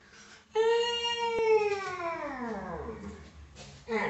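A long, drawn-out wailing cry that holds one pitch for about a second, then slides steadily down and fades.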